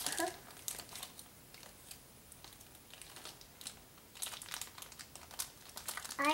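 Crinkly toy packaging being handled and pried open, crackling in short spells at the start and again from about four seconds in, with a quieter stretch in between.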